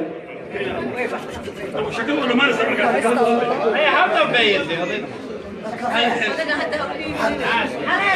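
Several voices talking at once: chatter.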